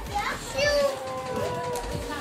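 Young children's voices talking and calling out close by, one voice drawn out in a long held sound about halfway through.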